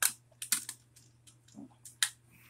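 A few sharp hard-plastic clicks from a Bakugan toy figure being handled, with one click at the start, a small cluster about half a second in and a couple more near the end.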